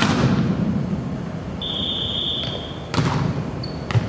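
Volleyballs being hit and bouncing in a sports hall: one sharp thump at the start and two more about three and four seconds in, each echoing. A brief high squeak sounds near the middle.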